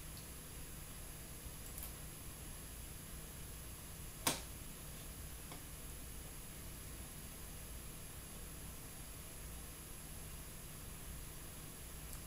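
A single sharp mouse click about four seconds in, over a faint, steady low hum.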